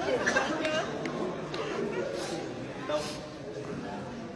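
Indistinct voices and chatter in a large hall.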